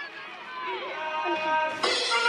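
Children's excited voices calling out, with music fading in about a second in and turning suddenly loud near the end.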